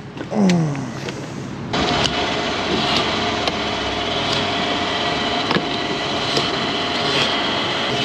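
Petrol pump nozzle dispensing fuel into a motorcycle's tank: a steady rush of flowing fuel that starts about two seconds in, with scattered sharp clicks.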